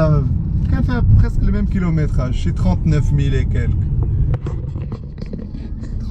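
A man talking over the steady low rumble of a Mercedes E550 coupé's V8 and road noise, heard from inside the cabin while driving.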